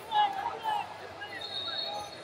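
Voices calling out over a wrestling match, with a steady high-pitched tone starting about one and a half seconds in.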